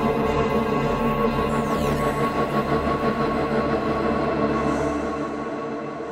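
Steinberg X-Stream spectral synthesizer preset played from a keyboard: a dense sustained chord of many held tones, with a few faint falling sweeps up high about two seconds in. It dies away over the last second.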